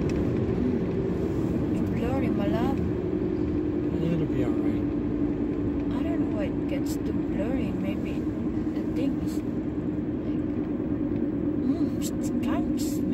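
Steady road and engine noise inside a moving car, a low drone with a steady hum. Faint voices murmur now and then over it.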